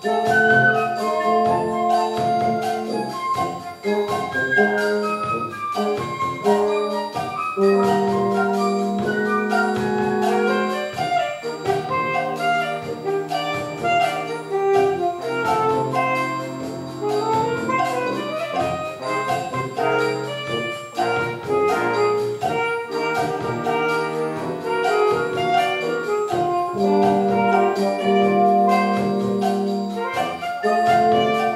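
Concert band playing a bossa nova arrangement, with brass and saxophones holding chords and carrying the melody over a steady drum-kit beat.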